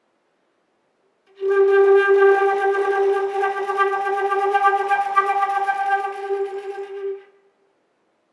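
Concert flute holding one note, a G, for about six seconds, played with flutter-tongue, fast heavy vibrato and smorzato lip pulsing all at once, giving a rough, fluttering tone; an extended-technique passage. It starts about a second and a half in and stops shortly before the end.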